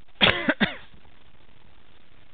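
A man briefly clearing his throat, a short burst of three quick voiced pulses within the first second.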